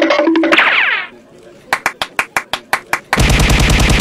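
Edited sound effects. A steady tone is followed by rising sweeps, then a run of sharp clicks about eight a second. From about three seconds in a loud, rapid rattle like machine-gun fire takes over.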